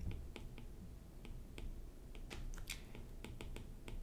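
A stylus writing on a tablet screen: a run of faint, irregular clicks and taps as the letters are written.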